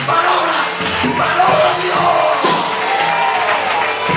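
Live worship music in a church hall, with a man's amplified voice making long sustained calls into a microphone over the voices of the congregation.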